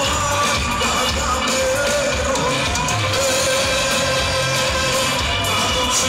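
Serbian pop-folk played live by a band through a PA system, with a male singer holding long, wavering notes over a steady beat.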